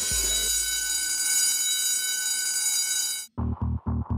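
An alarm-clock bell sound effect ringing steadily over a low boom, signalling that the challenge's countdown has run out. It cuts off suddenly about three seconds in, and electronic dance music with a thumping beat starts straight after.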